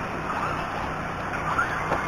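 Electric RC short-course trucks running on a dirt track, a steady motor and tyre noise with no clear pitch.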